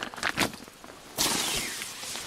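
A few light rustles, then, a little after a second in, a loud rasping slide lasting most of a second: a tent's door zipper being pulled open.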